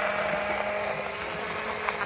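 Battery-powered mini personal blender running steadily, its motor humming at a constant pitch as it blends fruit and liquid, with a short click near the end.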